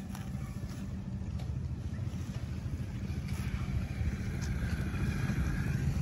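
Low rumble of a motor vehicle's engine, growing gradually louder.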